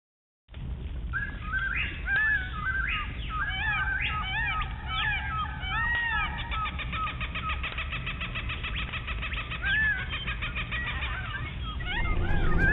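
Birds chirping, with repeated arching whistled notes and a fast trill in the middle, over a steady low rumble, like a rainforest ambience.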